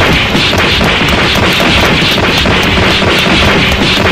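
A loud, steady rushing noise, an added sound effect, with a faint quick ticking running through it.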